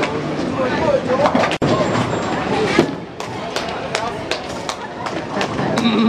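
Bowling alley din: a bowling ball knocking down the pins for a strike, with pins clattering and further knocks and crashes from other lanes over background chatter.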